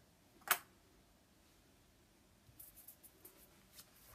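Hand handling of a cord necklace with wooden beads and a carved rosewood pendant: one sharp click about half a second in, then a run of light irregular clicks and rustles from about halfway on.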